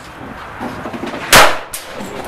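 A single shot from a Ruger LCP .380 pocket pistol about a second and a half in, sharp and by far the loudest sound, with a brief ring after it and a fainter click just after.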